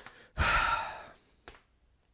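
A man sighing: a breathy exhale that fades over about half a second, then a short click.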